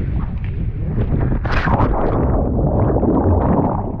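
A person jumping feet-first off a rock into the sea: a splash about one and a half seconds in, then churning water around him. Wind rumbles on the camera's microphone throughout.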